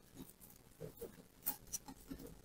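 Faint handling sounds of fingers pressing sisal cord onto the edge of a painted heart plaque: soft scattered rustles, with a sharp click about one and a half seconds in.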